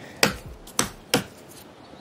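Gloved hands working with large quartz pavers on a deck: three sharp knocks of stone being handled within the first second or so, then only a low background.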